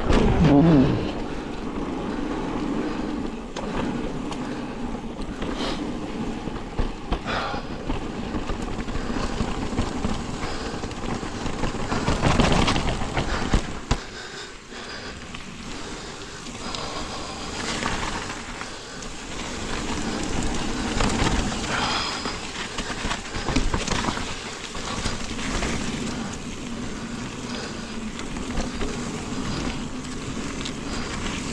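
Mountain bike riding a dirt trail: steady tyre and wind noise with frequent clattering knocks as the bike runs over bumps, loudest around twelve to fourteen seconds in.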